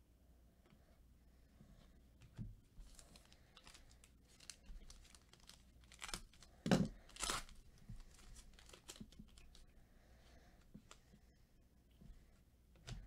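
A Panini Illusions football card pack's wrapper being torn open by hand. Faint crinkling and handling crackles come first, then two short, loud rips about seven seconds in.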